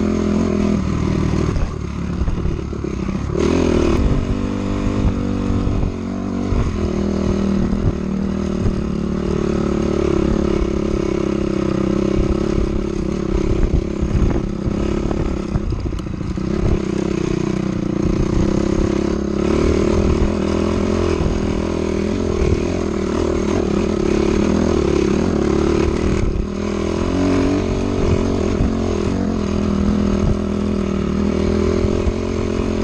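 Dirt bike engine running continuously as it is ridden along a dirt trail and up a hill, its pitch rising and falling with throttle and gear changes.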